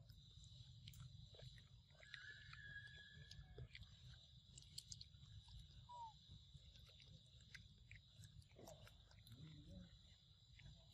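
Faint wet chewing and lip-smacking of a long-tailed macaque eating ripe papaya, with scattered small clicks, over a steady high-pitched drone.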